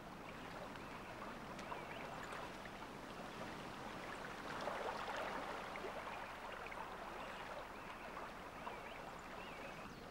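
Soft water noise and splashing as a heron wades and runs through shallow water, swelling a little about five seconds in. A few faint high chirps sound over it.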